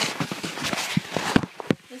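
Irregular knocks, clicks and rubbing from the recording phone being handled as it is picked up and swung round, about a dozen sharp knocks in two seconds.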